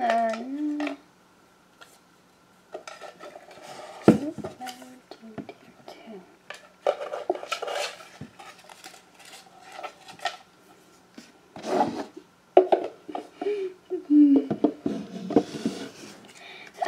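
Small hard objects clattering and clinking in irregular bursts as they are handled, with a short vocal sound at the start and a few brief ones near the end.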